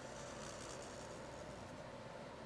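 Sharpie felt-tip marker drawn along paper in one long stroke, a faint steady scratch over room hiss.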